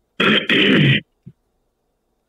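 A person clearing their throat: a short push and then a longer rasp, about a second in all.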